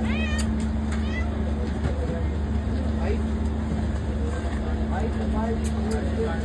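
Cat meowing twice in the first second, each call rising and then falling in pitch.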